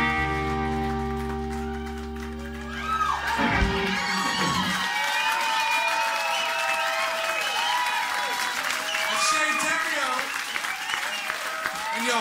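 A live rock band holds a final chord, deep bass under steady guitar and keyboard tones, and cuts it off with a closing hit about three and a half seconds in. The audience then breaks into applause and cheering.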